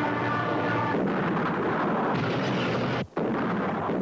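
Artillery gunfire and explosions making a dense, continuous din of battle noise. It cuts out for an instant about three seconds in.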